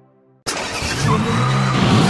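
Car engine revving, starting abruptly about half a second in after a brief silence, with music under it.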